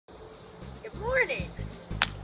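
Steady, high-pitched chorus of insects in the background, with a short voice sound about a second in.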